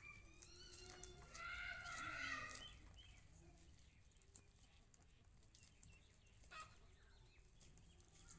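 A few pitched animal calls in the first three seconds, then faint scattered clicks of dried maize kernels being stripped off the cob by hand.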